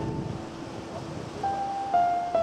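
Slow, sparse solo piano music: a held note fades away and a soft new note sounds about one and a half seconds in, over a steady background rush.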